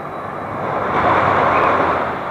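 Rushing noise of the Supergirl Sky Flyer swing ride getting under way, air and machinery sound swelling to its loudest about a second in and easing slightly near the end.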